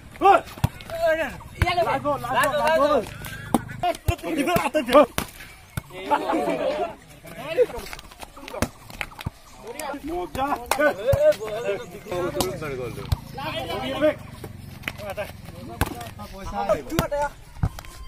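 Men's voices shouting and calling out during an outdoor volleyball game, with sharp smacks of hands striking the volleyball scattered throughout.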